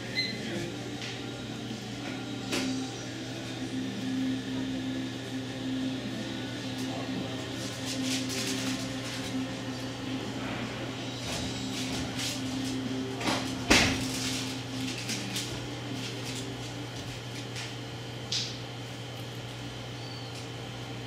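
Room tone with a steady low electrical hum, broken by scattered clicks and knocks, the loudest about 14 s in.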